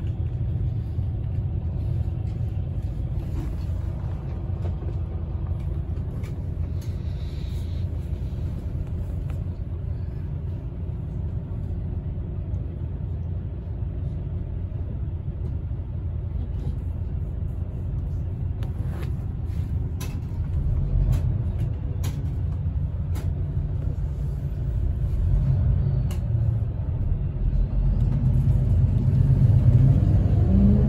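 Inside a city bus, a steady low rumble of the engine and drivetrain, with a few sharp clicks about two-thirds of the way through. Near the end the engine revs up, rising in pitch and growing louder as the bus accelerates.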